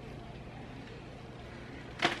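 Steady low hum and hiss of room tone, with no distinct sounds.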